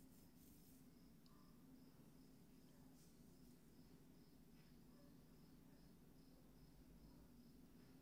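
Near silence: room tone with a faint low hum and a faint high-pitched pulsing tone that repeats a few times a second.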